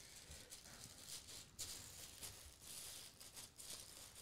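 Near silence: quiet room tone with faint, scattered rustling and handling noise, as of a wrapped gift box being felt in the hands.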